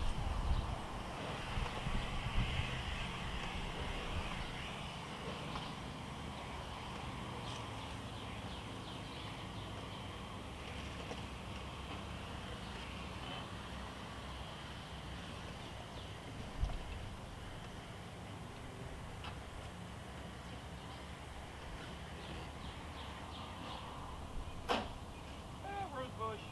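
Steady outdoor background noise with a low rumble, a little louder in the first few seconds. A single sharp click comes near the end.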